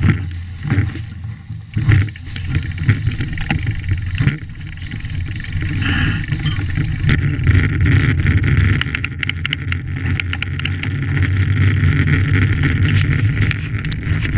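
Mountain bike riding with wind buffeting the microphone, a heavy rumble. Knocks and rattles come as the bike bumps down the rough woodland trail over the first few seconds, then it settles to a steadier rush of knobby tyres and wind on pavement with small crackles.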